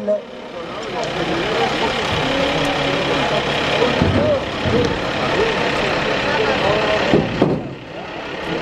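Dense, continuous din of many men shouting over one another among a packed scrum of horsemen in a kopkari (buzkashi) game. It dips briefly near the end.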